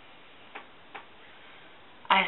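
Two short soft clicks a little under half a second apart, over a steady faint hiss.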